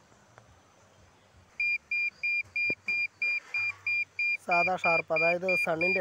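A Solid SF-810 Pro digital satellite meter beeping steadily, about three short high beeps a second, starting about a second and a half in. It is the meter's tone for a satellite signal being received and locked.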